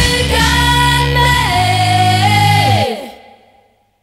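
Pop-punk band recording in which sustained female voices hold a note, step down and slide lower over a held low chord. The sound then dies away to silence about three seconds in.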